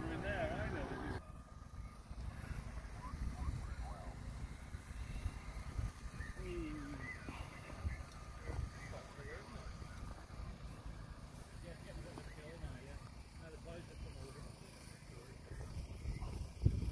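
Faint voices of people talking at a distance, with wind rumbling on the microphone. A closer voice is heard for about the first second, then cuts off suddenly.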